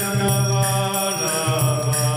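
A man chanting a Sanskrit mantra into a microphone in a slow, sung melody of long held notes.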